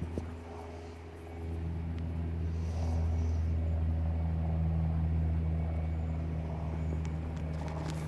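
A motor or engine running steadily nearby with a low droning hum that grows louder about a second and a half in, then holds.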